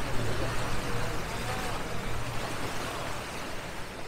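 Passenger ferry under way: a steady low engine hum beneath a rush of water and wind, with faint voices of people on deck. The whole sound slowly fades down in the second half.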